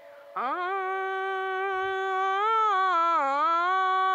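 A solo voice singing one long, drawn-out note. It slides up at the start, holds, then sags down in pitch and comes back up about three seconds in.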